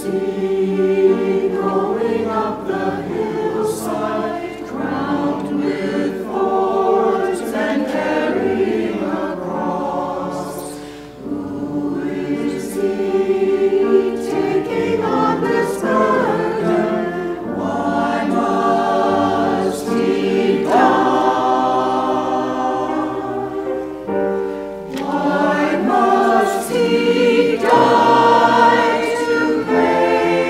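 Mixed choir of men's and women's voices singing a sacred anthem in phrases.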